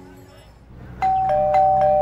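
Two-tone doorbell chime ringing ding-dong twice, high note then low note and again, the tones ringing on after each strike.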